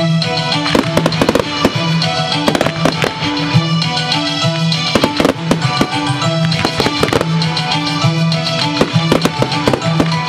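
Fireworks going off to music: many sharp bangs and crackles of aerial shells and comets, scattered throughout and layered over a continuous music soundtrack.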